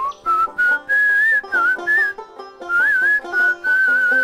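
A whistled tune wanders up and down in short phrases over background music with sustained instrument notes and sharp percussive hits.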